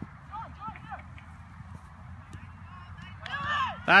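Outdoor sideline ambience at a youth soccer game: a low steady rumble with faint, distant shouts from the field about half a second in, then a man starting to shout near the end.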